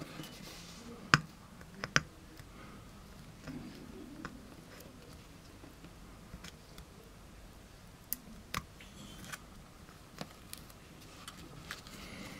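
Faint handling noise from a lens adapter turned in the fingers over a table: a scattering of small sharp clicks and taps, the loudest about a second and two seconds in and again around eight and a half seconds.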